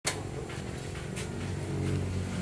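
An engine running with a steady low hum, growing slightly louder.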